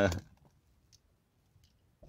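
A voice trails off in the first moment, then the car interior falls nearly quiet under a faint low hum, with a couple of small, faint clicks.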